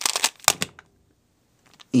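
Plastic 3x3 speedcube being turned quickly by hand: a rapid run of clicks lasting about half a second, then quiet apart from a couple of faint clicks near the end.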